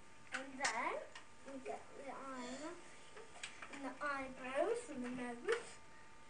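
Quiet, untranscribed talking throughout, with a few short clicks in between.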